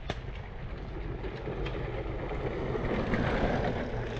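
Mountain bike tyres rolling over a dry dirt trail, with a steady low rumble and a few short rattles from the bike; the noise swells about three seconds in.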